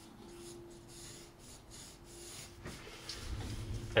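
Graphite pencil sketching on sketch paper: a series of soft, light scratching strokes as lines are drawn in.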